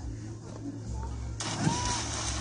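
A child letting go of a rope swing and splashing into lake water about a second and a half in, with a rush of water noise afterwards. A child's high voice cries out during the drop.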